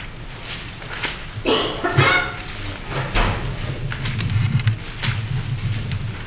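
Paper rustling and handling noise as pages of a book are turned, with two sharper rustles about one and a half to two seconds in, over low room noise.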